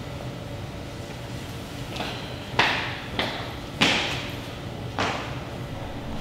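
Shoelaces of a leather lace-up sneaker being pulled and tightened by hand: a faint swish, then four quick swishing rustles, each fading fast, in the second half, over a steady low hum.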